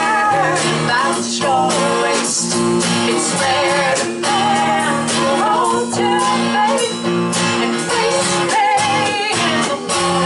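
Live folk-rock band playing: two women singing with vibrato over electric bass, acoustic guitar and a drum kit.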